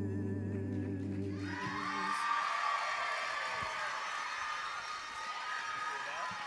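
A men's a cappella group holds its final chord over a deep sung bass note, the upper voices wavering with vibrato, and cuts off together about a second and a half in. The audience then breaks into cheering and applause.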